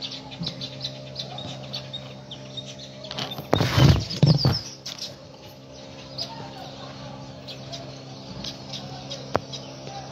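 Small birds chirping repeatedly, with a louder call of about a second in two pulses, most likely a chicken, about three and a half seconds in, over a steady low hum.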